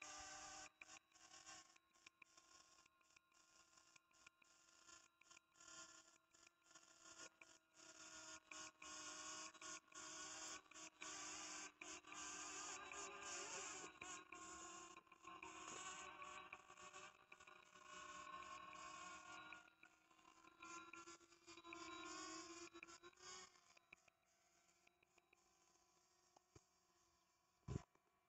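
DJI Mini 2 quadcopter's propellers whining faintly as it descends on an automatic landing toward the controller, a steady pitched buzz broken by many brief dropouts. The buzz fades near the end as the drone touches down.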